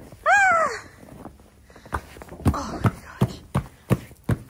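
A single loud animal call that rises then falls, then, from about two seconds in, boot footsteps at about three steps a second.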